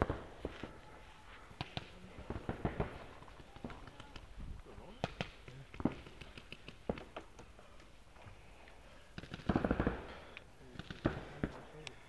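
Paintball markers firing irregular single shots and short strings of sharp pops, with a louder burst of noise about nine and a half seconds in.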